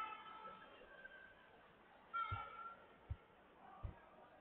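Faint squeaks of rubber shoe soles on the competition floor, one at the very start and one about two seconds in, followed by three soft low thuds of footfalls.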